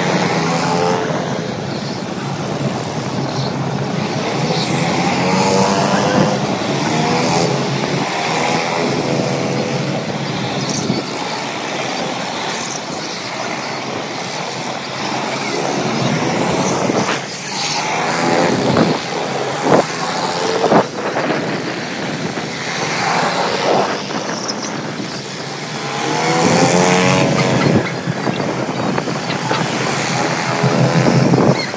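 Go-kart engines running around a track. Their pitch rises and falls over and over as the karts speed up out of corners, ease off and pass by.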